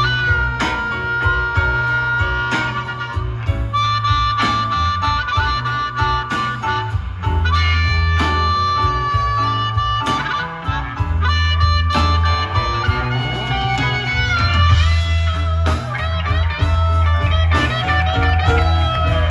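Live blues band with an amplified harmonica soloing in long held notes over electric bass, drums and guitar.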